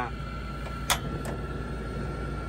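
Portable single-burner gas stove running, its flame giving a steady hiss with a low hum under it, and two sharp clicks about a second in.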